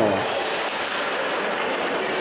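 Steady ice-rink ambience during play: an even, continuous rush of noise from the arena and skaters on the ice.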